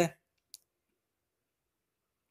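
Near silence, with one short faint click about half a second in, right after a spoken word trails off.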